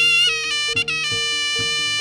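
Jaranan gamelan music: a shrill slompret (Javanese double-reed trumpet) plays a held melody note that changes pitch about a second in, over a steady repeating pattern of low gong tones and drum strokes about twice a second.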